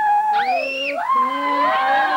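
Several children yelling in long, drawn-out voices that slide up and down in pitch, with a short, very high squeal about half a second in.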